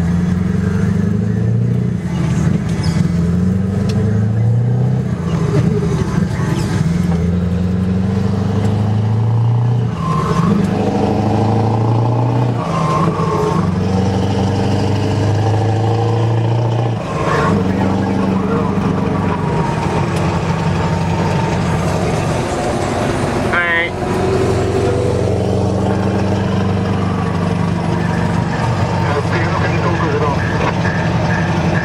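Scania V8 diesel truck engine heard from inside the cab while driving, pulling up through the gears: its pitch climbs and drops back at each gear change several times, then holds steady at cruising speed.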